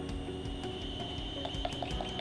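Faint ticking from a small speaker fed by a condenser microphone through an LM386 amplifier module, as the microphone is handled; the ticks come near the end. Soft background music plays throughout.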